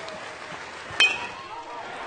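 A metal baseball bat hitting a pitched ball about a second in: one sharp metallic ping with a brief ring, over a steady crowd murmur.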